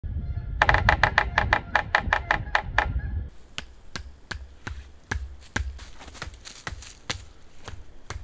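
Sapsucker drumming on a dead tree: about two and a half seconds of fast, even taps that ring with a hollow, woody tone. Then comes a run of slower, evenly spaced sharp knocks, about two and a half a second.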